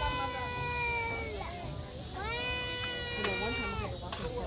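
A person's long, drawn-out shout held on one pitch, twice: one fading out after about a second and a half, another starting just after two seconds and lasting nearly two seconds. A sharp knock comes shortly before the end.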